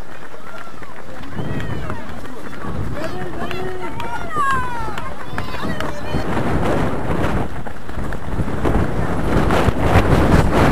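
Running in a pack of road-race runners, heard from a camera on a runner: a steady rush of wind and movement on the microphone with footfalls, growing stronger after about six seconds. Voices of other runners or onlookers call out in the first half.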